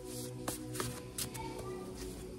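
Tarot cards being handled and shuffled, with a few short papery flicks about half a second, just under a second and just over a second in, over soft background music with held tones.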